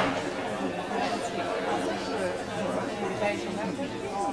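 Many audience members chattering among themselves in a theatre hall, voices overlapping with no single speaker clear. A short sharp knock sounds right at the start.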